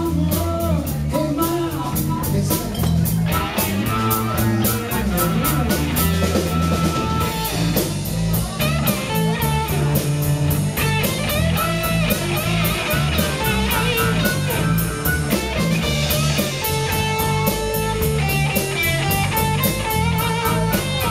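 Live blues band playing an instrumental passage: harmonica over electric guitar, bass guitar and drum kit, with a steady bass line and regular drum beat.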